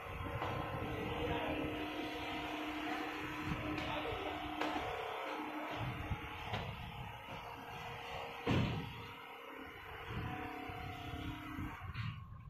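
Richpeace single-needle quilting machine running, its needle head stitching through a quilt with a steady motor hum and rapid needle rhythm. A single sharp knock sounds about eight and a half seconds in.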